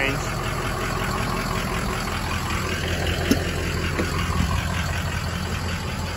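2004 Ford Excursion's 6.0-litre Power Stroke diesel V8 idling steadily, a low even hum, with a single light click about three seconds in.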